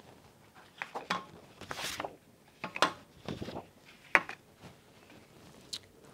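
Paper letter cards being handled and swapped on a flipchart easel: a run of irregular rustles, slides and light taps.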